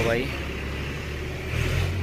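Diesel tractor engine running, a steady low rumble that grows louder near the end.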